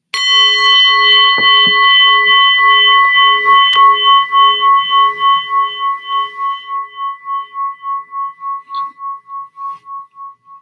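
A singing bowl struck once, ringing with several tones that wobble in a pulse about two or three times a second and slowly fade away, the signal that the meditation sitting has ended.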